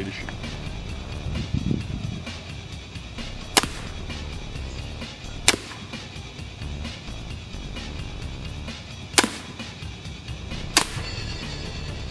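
Four sharp mechanical clicks, a few seconds apart, from the Barnett Razr crossbow's safety being worked, over steady background music.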